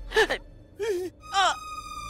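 Three short vocal exclamations, like gasps, the first and last falling in pitch. Near the end a held note of the background music score comes in.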